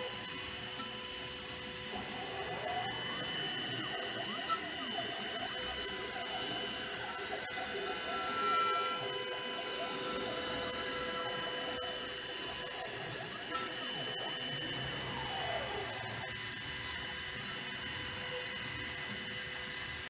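DIY 5-axis CNC router milling pink foam: a steady machine whine made of several held tones, with the pitch sweeping down about three seconds in and again near fifteen seconds as the axes speed up and slow down.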